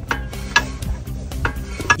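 Rear brake disc and wheel hub spun by hand, turning freely now that the caliper is no longer binding, with a light scraping hiss of the pads on the disc and a few sharp clicks.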